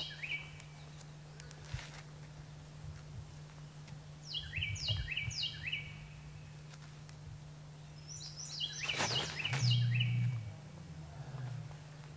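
A songbird singing three short phrases of quick, down-slurred whistled notes stepping down in pitch, roughly every four seconds, over a steady low hum. A louder muffled low rumble with some rustling comes about nine seconds in and lasts over a second.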